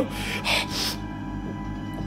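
Low, dark, droning background music, with two short breathy gasps in the first second.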